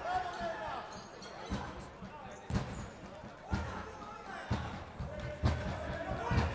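A futsal ball thudding on a hard sports-hall floor as it is passed and kicked, about once a second, echoing in the hall.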